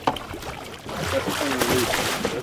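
Water splashing hard as a released goliath grouper thrashes at the surface against the boat's hull and dives, the rushing splash building about a second in.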